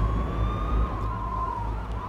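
A distant siren slowly rising and falling over a low, steady city rumble.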